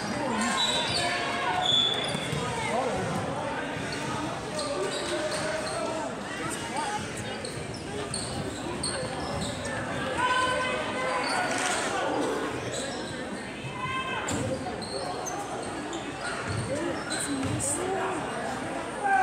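Spectators chattering and calling out, echoing in a school gymnasium. A few sharp thuds of a basketball bouncing on the hardwood court come through.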